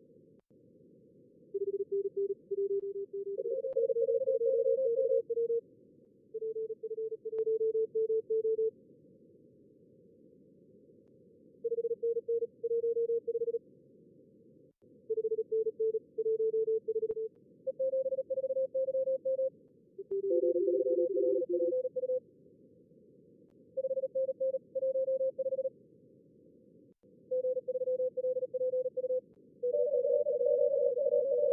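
Fast Morse code (CW) from a contest practice simulator. Short keyed exchanges at several slightly different pitches come in groups of a second or two, with pauses between. Steady, narrow-band receiver hiss runs underneath.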